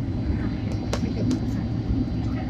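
Steady low rumble of engine and airflow noise heard inside the cabin of a Boeing 767 airliner descending on approach. A few brief sharp clicks sound around the middle.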